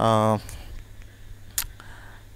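A man's brief held hesitation sound, then quiet, and a single sharp computer-mouse click about one and a half seconds in.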